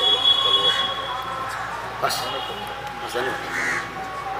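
A man talking in conversation, with a thin, steady high tone sounding in the first second.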